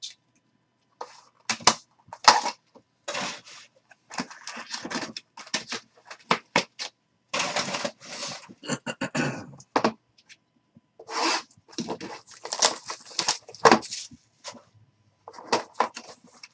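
Hands handling hard plastic card holders and a cardboard card box: an irregular run of rustles, scrapes and sharp clacks.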